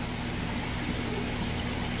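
Steady water rush and low hum of a large aquarium's pump and filtration, even throughout with no sudden sounds.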